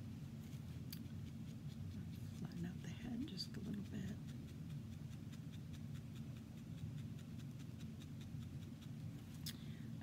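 Soft scattered pokes and rustles of a felting needle working wool roving on a doll, over a steady low hum, with brief faint muttering a few seconds in.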